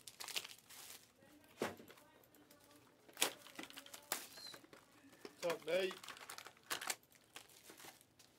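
Plastic wrapping on a trading card box crinkling and tearing in short, irregular bursts as the box is unwrapped by hand.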